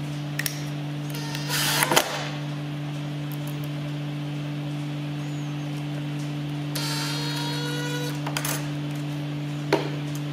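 Cordless drill/driver running a screw into the sewing table to fix the bobbin winder: a whine rising slightly in pitch for about a second near the seven-second mark. A short noisy burst comes about two seconds in and a sharp click near the end, over a steady low hum.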